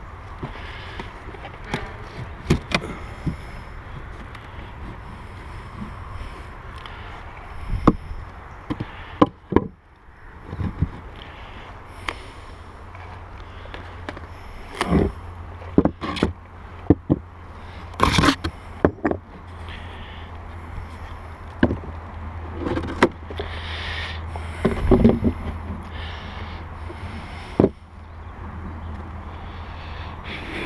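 Wooden beehive boxes and bricks being handled, lifted and set down: a string of irregular knocks, clunks and scrapes, with a steady low rumble underneath.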